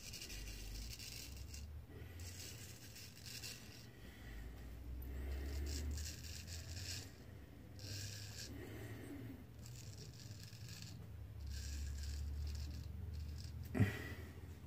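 Gold Dollar 66 straight razor scraping through lathered stubble on the neck and jaw in a series of short strokes, each about a second long, with brief pauses between them. A short thump comes near the end.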